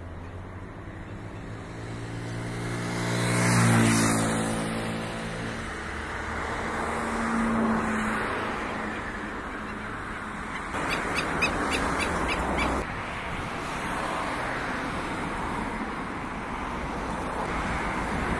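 Road traffic going by: a vehicle's engine swells to a peak about four seconds in and fades, over a steady traffic hum. A short run of sharp high ticks comes about eleven seconds in.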